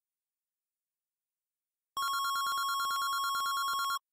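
Silence, then about halfway through a telephone starts ringing with a steady, rapidly pulsing trill.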